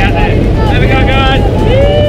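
Loud, steady drone of a light aircraft's engine and propeller heard from inside the cabin, with raised voices over it.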